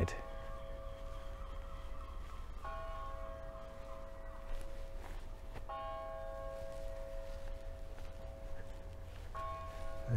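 A tower bell striking four slow strokes about three seconds apart, each note ringing on as it fades. The chimes are guessed to be the town hall clock.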